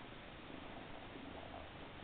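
Siamese kitten purring faintly.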